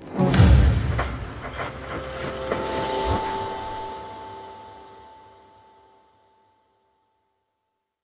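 Electric guitar playing a short closing phrase of chords, several strums in the first three seconds, then a last chord that rings and fades out over about three seconds.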